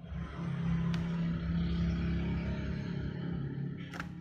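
A motor vehicle passing by: a steady low engine hum that swells in over the first half second, holds, and fades out near the end. There is a single sharp click about a second in.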